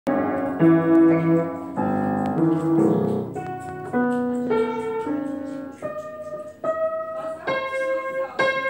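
Upright piano being played: sustained chords low in the range for the first few seconds, then single notes one after another higher up, coming quicker near the end.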